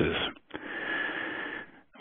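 A man's long, audible in-breath lasting just over a second, slightly wheezy, taken between sentences and heard over a telephone-quality line.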